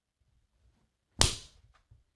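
A single sharp smack a little over a second in that dies away quickly, followed by a faint click just before the end.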